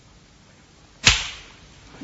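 A single sharp crack about a second in, dying away within half a second.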